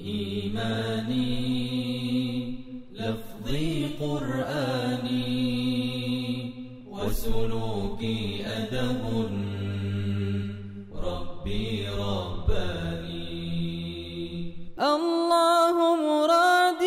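Devotional Islamic vocal chant in nasheed style over a held low drone, sung in long phrases that break about every four seconds. Near the end a higher, wavering voice line takes over and gets louder.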